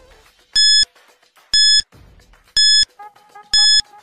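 Countdown-timer beep sound effect: short, high electronic beeps, one each second, four in all. A faint steady tone comes in underneath about three seconds in.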